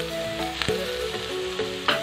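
Ground chicken frying in a little oil in a stainless-steel pan with onion and garlic, sizzling steadily as a wooden spatula stirs it. The spatula knocks against the pan twice, about a second apart.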